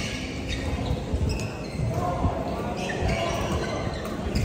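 Badminton rallies in a large echoing sports hall: rackets hitting shuttlecocks in sharp clicks, with sneakers squeaking on the court floor.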